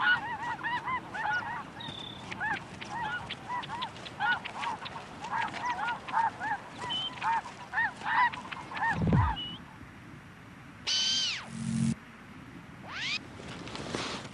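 A flock of barnacle geese calling, a dense stream of short overlapping calls. After about nine seconds the flock calls stop, and a few louder, different calls follow: one with high sweeping notes over a low buzz, then a rising sweep.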